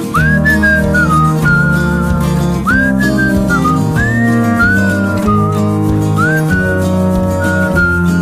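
Background music in an instrumental break of a pop song: a whistled melody, scooping up into each phrase, over a steady guitar and band backing.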